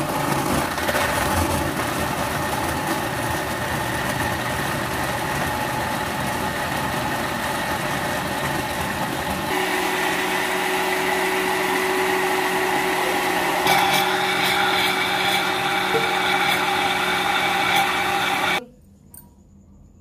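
Electric kitchen blender motor running steadily while blending milk with bananas, dates and almonds into a shake. Its tone shifts about halfway through and again a few seconds later, and it cuts off suddenly shortly before the end.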